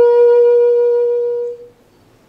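Saxophone holding one long closing note that fades out about a second and a half in.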